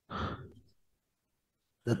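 A short sigh breathed into a microphone, lasting about half a second, followed by silence; a man starts speaking right at the end.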